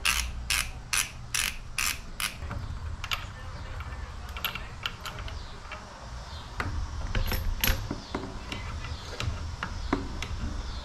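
Ratcheting driver with a T27 Torx bit clicking steadily, about two and a half clicks a second, as it backs out the clamp screws of a Harley's front brake master cylinder and lever perch. After about two seconds the clicks become sparse and irregular, with small metal handling sounds.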